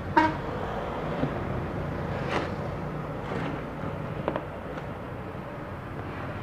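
A steady low hum with a few faint, light knocks as the opened metal chassis of an inverter welder is handled and turned on a workbench.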